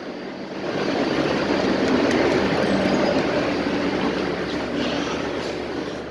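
Heavy engine-driven machinery running: a steady mechanical rumble that swells about a second in and slowly fades.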